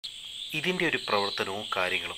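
A man talking, starting about half a second in, over a steady high-pitched chirring hum in the background.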